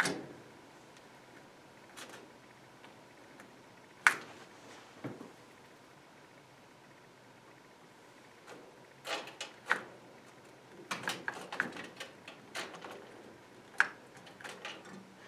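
Scattered clicks and light knocks from hands working the gas valve control knob of a gas log fireplace: one sharp click about four seconds in, then a run of clicks and small rattles in the last few seconds.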